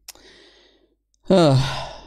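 A man sighs audibly: a faint intake of breath early on, then a loud, breathy, partly voiced exhale in the second half. A single sharp click comes right at the start.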